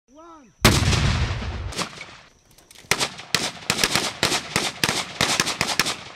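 A loud explosion with a heavy low rumble lasting about a second, then, about two seconds later, a run of single rifle shots, roughly three a second, from AK-pattern rifles in a combat engineers' field exercise.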